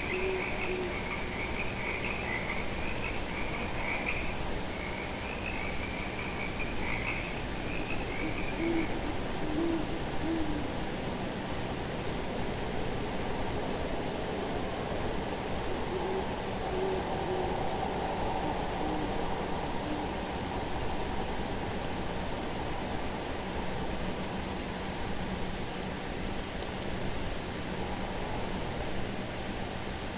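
Owls hooting in the background: short, low hoots every few seconds over a steady hiss. A higher wavering trill runs alongside and fades out about a third of the way in.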